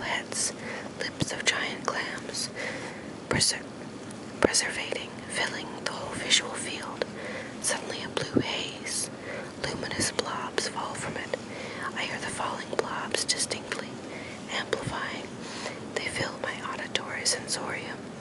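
Whispered speech: a person reading a book passage aloud in a whisper, with frequent sharp clicks throughout.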